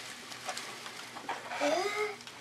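Shredded Easter grass rustling and crackling in a wicker basket as handfuls are dug out of it. Near the end a short vocal sound from a person rises and falls in pitch.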